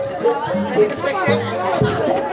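Live gamelan music accompanying a jaranan horse-trance dance: a repeating pattern of held pitched tones, with crowd chatter over it.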